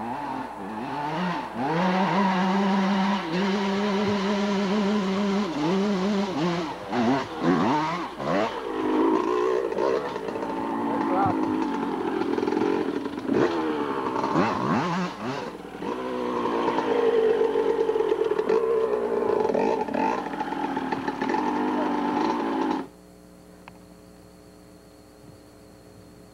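Yamaha YZ250 two-stroke dirt bike engine revving hard up and down as the bike climbs a hill, its pitch rising and falling over and over. It cuts off abruptly near the end, leaving a faint steady hum.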